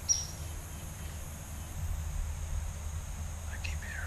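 Quiet woodland ambience: a steady low rumble with a faint, steady high hiss, with no distinct calls standing out. A whispered voice starts again near the end.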